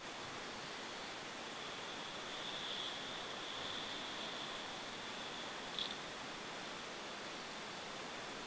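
Steady low hiss with a faint high whine running through it, and one small click about six seconds in.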